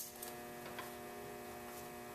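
Steady electrical mains hum with several even tones, and a faint click about a second in as braided steel brake hoses are handled.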